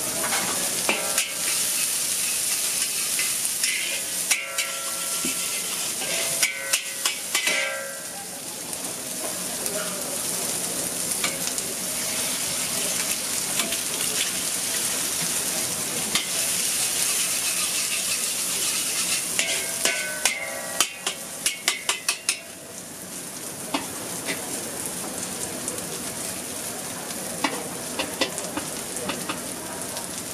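Shredded cabbage and eggs frying in a hot wok with a steady sizzle, while a metal spatula scrapes and clacks against the wok in bursts: a second or two in, again around five to eight seconds, and again about two-thirds of the way through.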